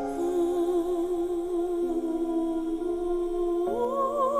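Male singer holding a long wordless vocalise note with vibrato, then sliding up to a higher note near the end, over sustained accompaniment chords.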